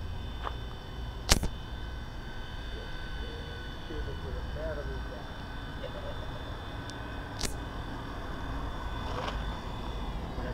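HobbyKing FP100 micro electric RC helicopter in flight, its motor and rotor making a steady high whine in a few tones that fades near the end as it comes down to land. Sharp clicks cut through it, the loudest about a second in and another about seven seconds in.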